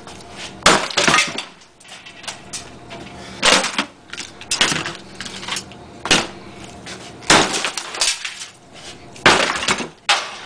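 Hammer blows smashing a refrigerator ice maker module: about nine sharp hits at uneven spacing, each with a crack and rattle of breaking parts.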